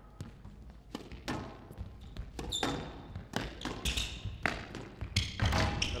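A squash rally: the ball cracks off rackets and the glass-walled court every half second or so, each hit ringing briefly, with short high squeaks of shoes on the court floor.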